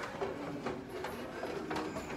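Quiet background noise of a fast-food restaurant: a steady low hum with a few faint clicks.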